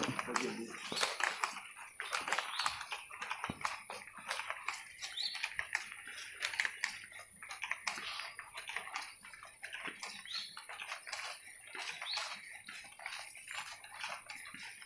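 Footsteps on a tiled floor with plastic carrier bags rustling as they swing, an irregular run of small clicks and crinkles, with faint voices in the background.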